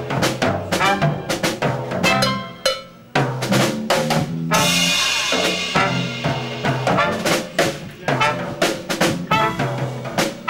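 Dixieland jazz band playing live, horns over a busy drum kit, with a brief break about three seconds in before the band comes back in.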